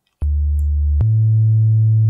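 Xfer Serum soft synth playing a deep house bass patch built on a sine-wave oscillator: a low held note comes in about a fifth of a second in, then a higher held note about a second in. Each note starts with a click, which comes from the envelope's very fast attack.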